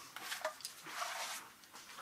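Faint handling noise of a sheathed seax being lifted and turned in the hands: soft rustles of leather and cloth with a few light knocks in the first second.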